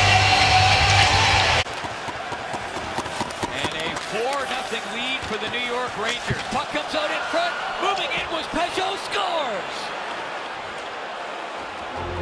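Loud hockey-arena crowd noise that cuts off abruptly under two seconds in. It is followed by quieter live game sound: repeated sharp clacks of sticks and puck on the ice and boards, with indistinct voices.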